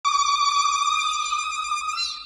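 A steady, high-pitched electronic tone with bright overtones, held without a break, the sound effect of a countdown-timer intro.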